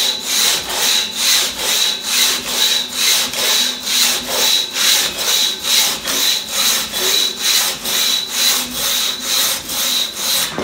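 One-man crosscut (single-buck) saw cutting through a large log, its teeth rasping through the wood in fast, even back-and-forth strokes at about two a second.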